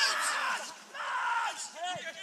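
Two long shouted calls from voices on and around a football pitch, one at the start and another about a second in, with no clear words.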